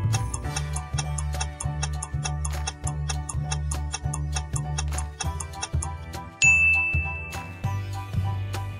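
Quiz countdown timer: a clock-like ticking, about four ticks a second, over looping background music. About six and a half seconds in, the ticking stops and a single bright ding rings for about a second as time runs out and the answer is revealed.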